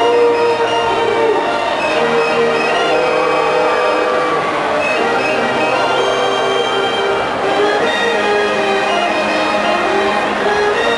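Marching band brass section playing a slow passage of long held chords, the chord changing every second or two.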